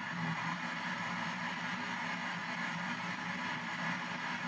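P-SB7 ghost box sweeping the FM band in reverse, giving out a steady hiss of radio static through its speaker.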